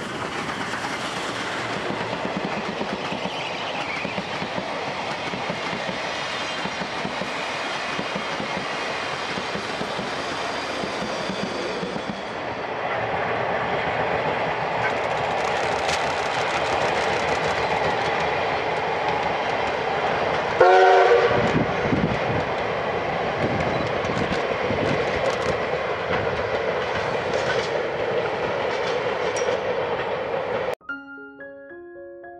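C61 20 steam locomotive and its train running past, a steady mix of rumble and rail noise. About 21 s in, one short, loud blast on the steam whistle.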